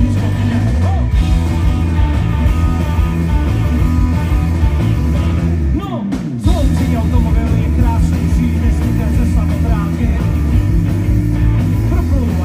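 Live rock band playing a fast song through a PA: electric guitars, bass guitar, drum kit and a sung lead vocal. About halfway through, the band drops out for about half a second, then comes back in at full volume.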